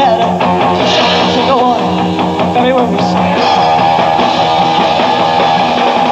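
Live blues-rock power trio playing an instrumental passage: electric guitar, bass guitar and drums, with the lead guitar bending notes over a steady beat.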